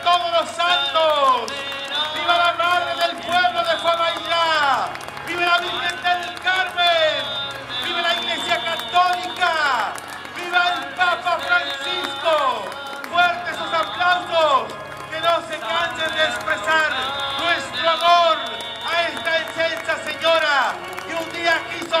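Music: a solo singing voice holding notes that slide steeply downward at the ends of phrases, over a bass line that changes note every second or two.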